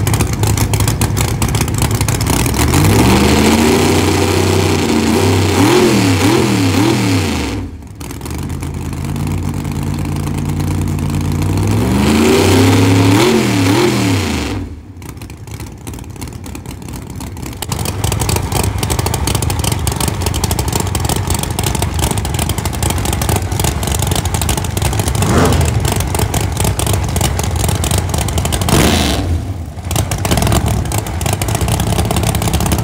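Pro mod drag car's racing V8 revved in two sets of quick blips, the pitch sweeping up and down each time, then running at a loud, choppy idle.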